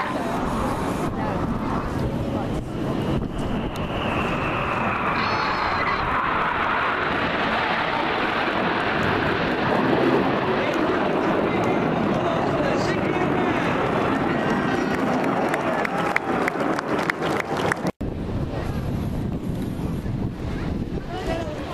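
Jet noise from a Red Arrows BAE Hawk jet flying past, a broad rushing engine sound with a high whine that falls in pitch a few seconds in, loudest around the middle. Crowd chatter runs underneath.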